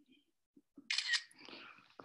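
A camera shutter sound about a second in: a short double click, followed by faint handling noise.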